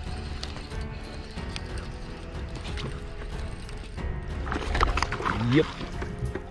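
Baitcasting reel being cranked as a hooked bass is brought to the kayak, with scattered clicks of reel and tackle handling over background music.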